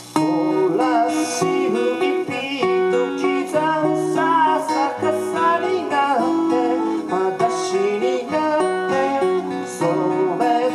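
Two acoustic guitars played together, strummed and picked, with a man singing over them in a live performance. The playing comes in loud at once after a fading chord.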